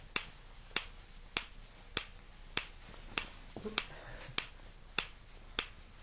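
Metronome clicking at a steady tempo, about 100 beats a minute, setting the pace for side-to-side head turns while walking.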